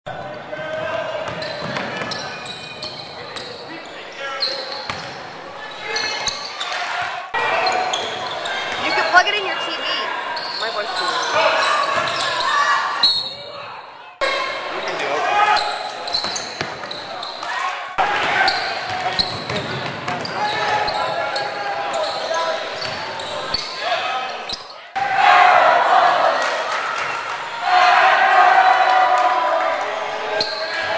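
Basketball game in a large gym: a ball bouncing on the court amid players' and spectators' voices echoing in the hall. The sound changes abruptly several times where short clips are cut together, and the voices are loudest near the end.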